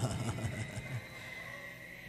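A brief pause in a man's spoken lecture. The faint end of his voice trails off in the first moment, leaving quiet background noise with a thin steady high-pitched tone.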